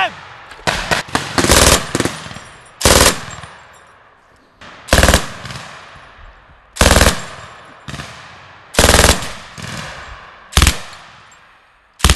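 A belt-fed machine gun firing short bursts, about six of them roughly two seconds apart, each burst a rapid string of shots followed by a fading echo.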